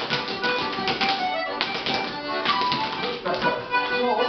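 Rapper sword dancers' hard-soled shoes stepping on a wooden parquet floor, a rapid run of taps, over a dance tune.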